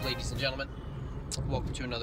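Steady low road and engine noise inside a moving car's cabin, under a man talking.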